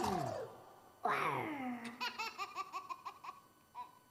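The song's music fades out. A falling vocal swoop follows about a second in, then a quick run of high, rapid giggles with one last giggle near the end: a recorded laugh from the soundtrack of a children's farm-song video.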